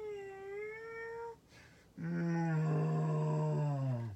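A woman's voice imitating animals: a high, drawn-out meow lasting about a second, then, after a short pause, a long, low, steady moo lasting about two seconds.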